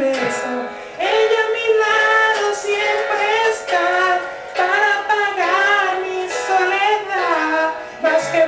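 A voice singing a slow ballad melody in long, sliding phrases over musical accompaniment, with short breaths between phrases just before a second in and around the middle.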